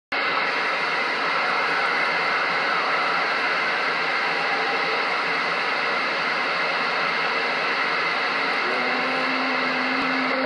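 Steady static hiss from a Galaxy CB radio's speaker, an open channel with no station coming through clearly. A steady low tone joins near the end.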